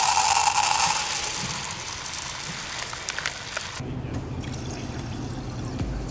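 Running water, a steady hiss that changes to a lower, duller sound about four seconds in.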